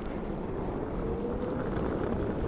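Steady low rumble of wheels rolling on pavement, with wind on the microphone. A faint steady whine comes in about halfway through.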